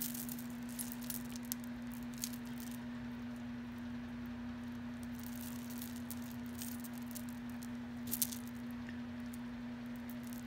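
Beaded costume-jewelry necklaces clicking and clattering as they are pulled from a tangled pile, with bursts of clicks in the first few seconds and again about eight seconds in. A steady low hum runs underneath.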